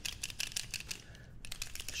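Forney paint pen being shaken by hand, its agitator ball rattling inside in rapid, even clicks that pause briefly about a second in.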